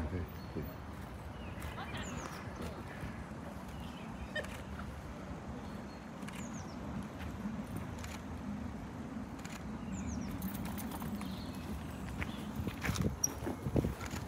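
Horse-drawn hearse carriage arriving: the hooves of its white horses clop on a tarmac path over a low rumble of the wheels rolling. The rumble grows toward the middle, and the knocks come loudest about a second before the end as the horses come close.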